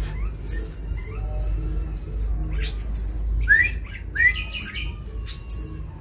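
Young sunbird chirping: a scattering of short, sharp high chirps, with a couple of louder slurred chirps a little past the middle.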